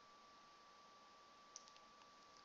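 Near silence: faint room hiss with a thin steady whine, and a short cluster of faint clicks about one and a half seconds in.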